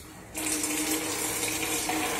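Reverse osmosis water plant starting up about a third of a second in: a sudden, steady rush of flowing water with a steady hum underneath.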